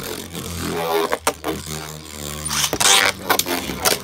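Beyblade Burst spinning tops whirring in a plastic stadium while a second top is launched in. There are sharp clacks as the tops strike each other and the stadium, and a loud scraping burst about three seconds in.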